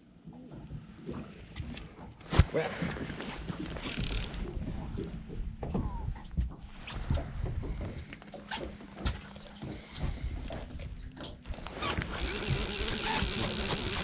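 Scattered knocks and handling clatter on a fishing boat's deck, one sharp knock about two and a half seconds in, over a low steady rumble.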